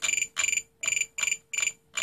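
Spektrum DX8 radio transmitter beeping as its scroll roller is turned: about five short runs of rapid high beeps, one run per quick turn of the roller, as a mix's offset value is stepped up toward 100%.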